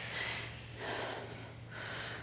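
A woman's breathing, picked up close, in a few soft breaths in and out while she works with dumbbells. A faint steady hum runs underneath.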